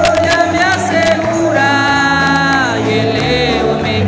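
Men singing a Spanish-language congregational hymn into microphones over a live band with electric guitar, amplified through a PA; the voices hold one long note in the middle.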